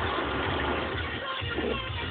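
Music playing on the car radio, heard inside the car's cabin over the car's low running rumble.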